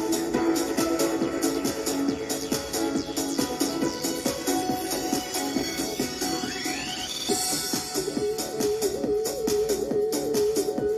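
An electronic dance track played through the small built-in Bluetooth speakers of a G-shaped LED table lamp, with a steady beat and a rising sweep about two-thirds of the way in.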